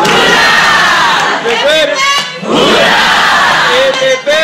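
A group of teenagers cheering and whooping together in loud, overlapping shouts with long pitch glides. The shouting comes in two swells, with a short break a little after two seconds in.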